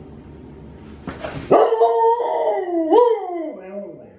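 A dog's long howling 'talk': one drawn-out vocal call lasting about two seconds from halfway in, sliding down in pitch, lifting briefly once, then trailing off low. A couple of short breathy huffs come just before it.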